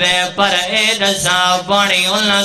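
A man's voice chanting a Shia majlis lament in Punjabi, drawing out long, wavering held notes into a microphone.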